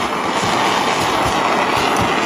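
Handheld gas soldering torch burning with a steady rushing hiss, its flame playing over fluxed silver pieces on a soldering brick to dry the flux.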